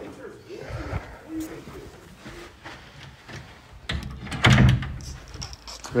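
Handling noise from a phone being carried, with a loud clatter or knock between about four and five seconds in. Faint voices are heard underneath.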